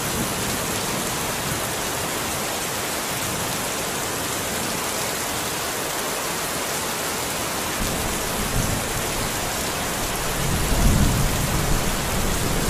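Steady, dense hiss of heavy rain, with low rumbles swelling near the end.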